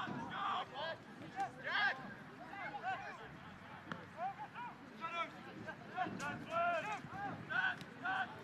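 Players' voices shouting and calling out across a soccer pitch, short scattered calls heard from a distance over faint open-air background noise.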